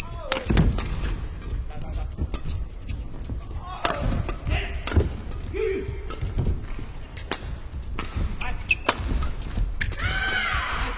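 Badminton doubles rally: rackets striking the shuttlecock again and again, a sharp crack every half second to a second, with short shoe squeaks and footfalls on the court floor between the hits.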